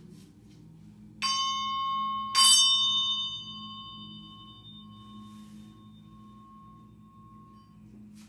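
A ritual bell struck twice, about a second apart, the second strike louder, each ring leaving a clear tone that fades away slowly over several seconds.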